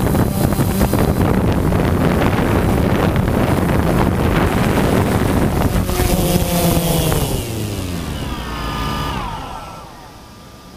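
Small propeller motors running under heavy wind noise on the microphone. From about six seconds in they wind down together in falling pitch and fade away as the craft settles in the grass.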